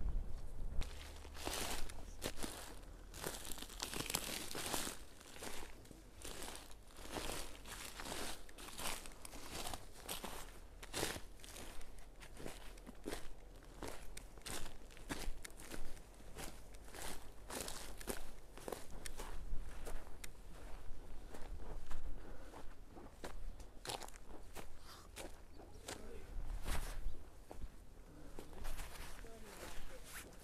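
Footsteps walking over dry pine needles and dry grass, at a steady pace of about two steps a second.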